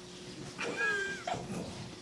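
A single short meow-like call, about half a second long, falling in pitch near the middle.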